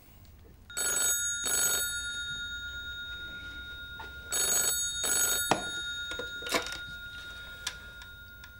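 Old desk telephone bell ringing in two double rings, each ring trailing off, followed by a few short clicks near the end.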